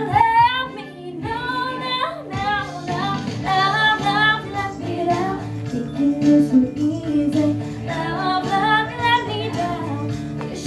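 A teenage girl sings a country song live into a handheld microphone over instrumental accompaniment, her voice bending and sliding between long notes.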